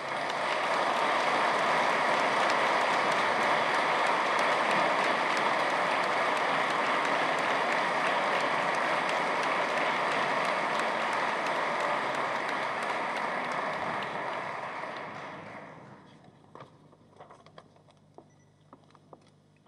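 Audience applauding, a dense, steady clapping for about fifteen seconds that then dies away to a few scattered claps.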